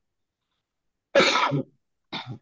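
A person coughing once, about a second in, a short loud burst heard over a video-call microphone.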